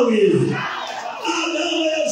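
A loud shouted voice through a microphone and loudspeakers, the first cry falling in pitch, with a crowd's voices.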